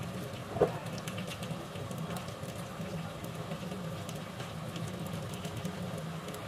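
Flour-dredged cod steaks frying in oil in a pan: a steady sizzle with many small crackling pops, over a low hum. A single sharp knock about half a second in.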